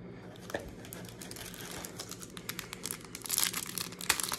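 Crinkling of a 2023 Prizm Football retail pack's plastic wrapper as the pack is handled and torn open, a faint crackle that grows denser and louder near the end.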